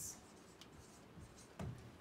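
Dry-erase marker writing on a whiteboard: a short squeaky stroke at the start, a faint one a little later, and a louder stroke about one and a half seconds in.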